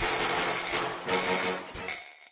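Electric buzzing and crackling sound effects of a flickering neon sign in an animated logo, in three short bursts, over electronic music that fades out near the end.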